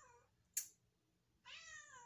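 A cat meowing: the falling tail of one meow at the start and a second meow about a second and a half in, with a short click between them.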